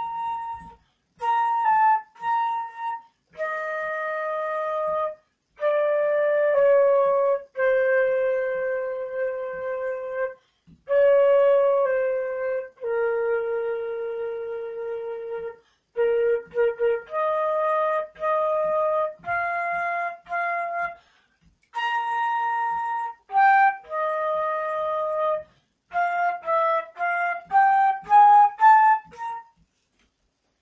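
Solo concert flute playing a slow melody, one sustained note at a time, in phrases separated by short pauses. Near the end it plays a quicker rising run of notes.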